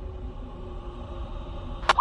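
A pause in police radio traffic: a low, steady rumble with faint held tones of eerie background music. Near the end a single sharp click sounds as the next radio transmission keys up.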